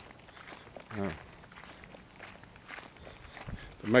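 Faint footsteps on grass.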